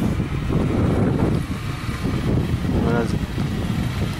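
Wind buffeting the microphone with a loud, uneven low rumble, and a man's voice breaking in briefly about three seconds in.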